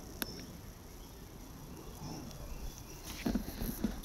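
Knocks and thumps of footsteps and hands on a wooden treehouse ladder as someone climbs down. There is one sharp click just after the start, and most of the thumps come in a cluster near the end.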